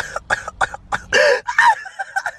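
A person laughing close to the microphone in a run of short bursts, several a second, with a longer burst about a second in.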